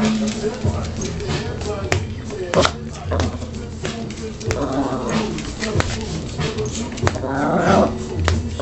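A song plays while a toy poodle vocalizes in two bouts, one about halfway through and one near the end, over light clicks.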